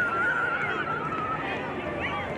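A long, high, drawn-out shout that slowly falls in pitch, over the chatter of players and spectators at a soccer match.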